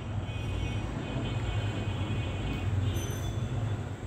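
A steady low rumble with a faint hiss and no distinct event.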